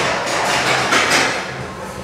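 Loaded steel barbell being lifted out of a squat rack: a few short knocks and rattles of the bar and plates in the first second or so, then quieter.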